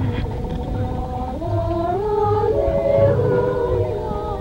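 A women's folk group singing a cappella in close harmony: long held notes, with more voices joining about a second in and the harmony stepping upward.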